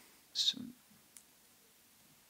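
Quiet pause with a short breathy mouth noise from the speaker about half a second in, then a single faint click a little past a second in.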